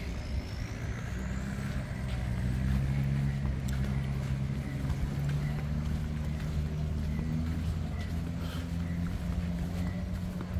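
Tractor engine running steadily at low revs, a low, even hum.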